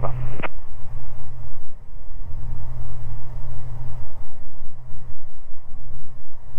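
Twin piston engines and propellers of a Beechcraft G58 Baron running steadily in flight, heard inside the cockpit as a low drone that wavers slightly in level.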